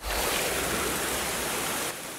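Cartoon sound effect of a geyser-like jet of water gushing up out of the ground: a steady rushing of water that starts suddenly and holds even, easing off slightly just before the end.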